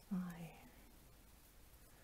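Speech only: a woman says one counted word near the start, then quiet room tone.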